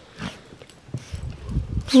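Small dog being petted and jostled on a rug, with soft snuffling and scuffling, and low bumps from the hand-held camera being knocked about in the second half.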